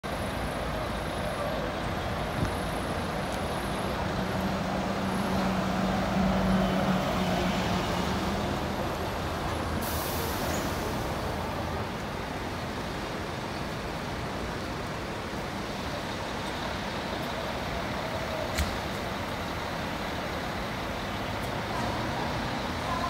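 Diesel engines of intercity coaches running over steady traffic noise, with one engine's hum loudest a few seconds in. A short air hiss comes about ten seconds in.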